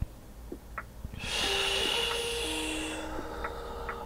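A long audible exhale through the mouth, paced with a yoga movement. It starts about a second in and fades over about two seconds. Soft background music with held notes runs underneath.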